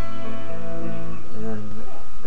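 Electric guitar picking chords, the notes ringing on and changing every fraction of a second.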